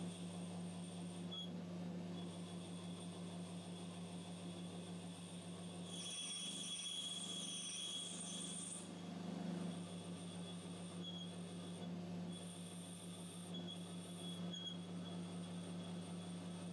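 Metal lathe running with a steady motor hum while a cutting tool turns down the end of a brass rod. A thin high whine from the cut grows louder for about three seconds midway.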